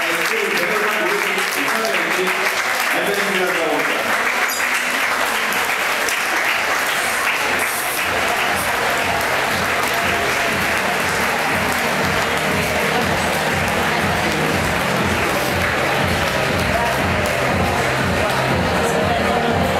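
Audience and models applauding steadily, with voices over it in the first few seconds. About six seconds in, music with a steady bass beat comes in under the clapping.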